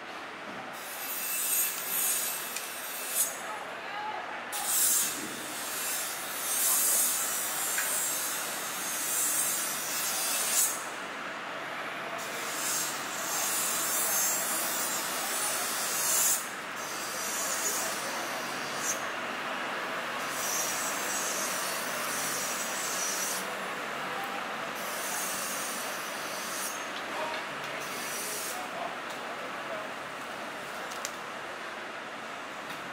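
A long knife rasping and slicing through a large bluefin tuna's flesh and along its bones in stretches of a few seconds each, over a steady background of market noise.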